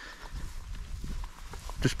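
Footsteps of people walking on a grassy field path: irregular soft knocks over a low rumble, with one spoken word near the end.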